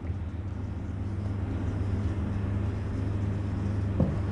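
Steady low hum with an even hiss of room background noise, unchanging throughout.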